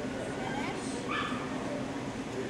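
A dog gives a short high-pitched call about a second in, after a few faint rising and falling glides, over a steady murmur of voices in a large hall.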